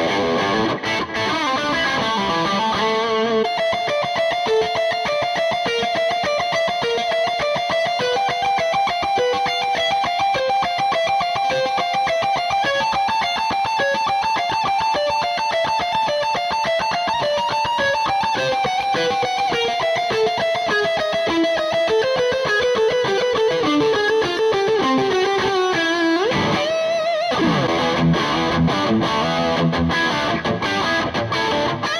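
Gibson '56 Les Paul reissue goldtop with P90 pickups played through a distorted Marshall Silver Jubilee amp: a high-gain lead solo of quick single-note runs, a little trebly, with a long descending run and then a fast slide up the neck near the end. A backing track with bass and drums sounds under it for the first few seconds and comes back near the end.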